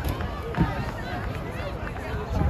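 Indistinct chatter of several spectators talking at once, overlapping voices with no single clear speaker.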